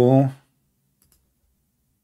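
A man's voice finishing a spoken word, then two faint computer mouse clicks in quick succession about a second later.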